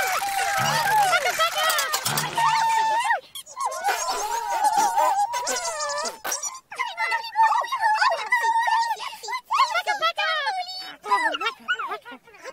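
High-pitched, squeaky babbling voices of children's TV puppet characters, warbling and chattering over light children's music.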